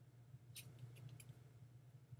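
Near silence over a steady low hum, with a few faint rustles and ticks of paper and cardstock being handled and pressed down by hand, gathered about half a second to a second in.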